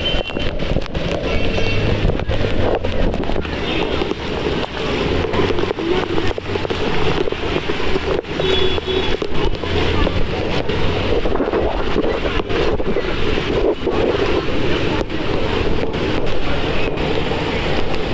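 Steady rushing noise of heavy rain and wind buffeting the phone's microphone over a flooded street.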